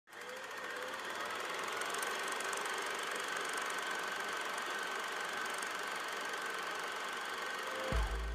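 Old film projector sound effect: a steady mechanical whirring and rattling with a faint high whine held throughout, fading in at the start.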